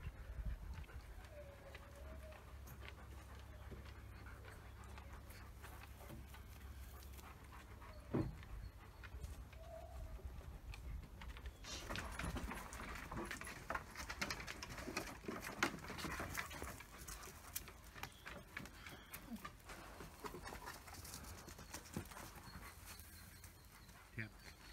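Dogs panting and moving about. About halfway in, a busy run of quick clicks and taps starts: dog claws on wooden deck boards.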